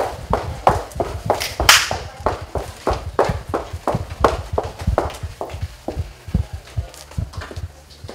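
Footsteps of people walking quickly on a hard floor, about three steps a second, with a brief hissing rustle about two seconds in.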